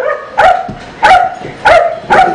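A dog barking repeatedly: three short, high-pitched barks about two-thirds of a second apart.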